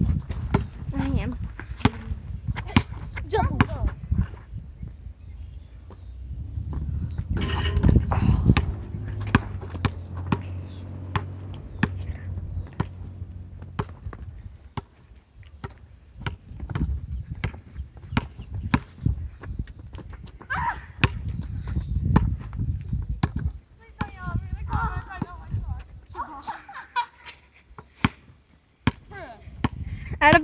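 A basketball bouncing on an asphalt court: irregular thuds throughout, with a low rumble in the first half.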